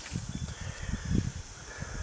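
Low, irregular knocks and bumps of a dead squirrel being handled and laid down on a plastic truck bed liner, over a faint steady insect drone.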